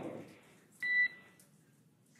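A single electronic beep on the mission radio loop, one steady tone about half a second long, starting about a second in, just after a spoken call ends.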